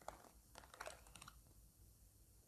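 Near silence: room tone with a few faint small clicks in the first second and a half.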